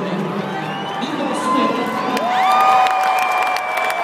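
Large stadium crowd cheering, with long held whoops rising above the din from about halfway through.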